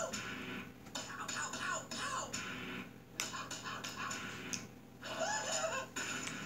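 Music with faint voices from a video playing through a device's speaker.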